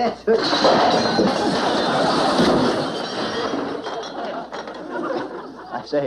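A tea cart of china knocked over: a sudden clattering crash of cups and crockery just after the start, followed by audience laughter that swells and then dies away over several seconds.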